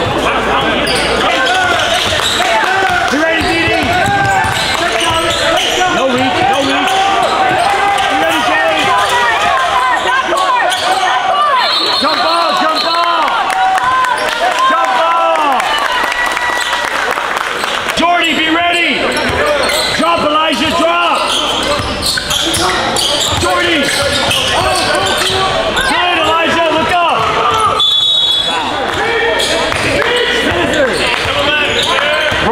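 Basketball game on a hardwood gym court: sneakers squeaking in many short chirps and the ball bouncing, with players' voices mixed in.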